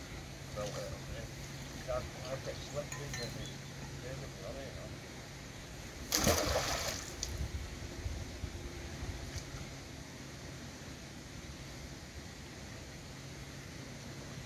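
A magnet-fishing magnet on its rope thrown into the canal, landing with a single splash about six seconds in.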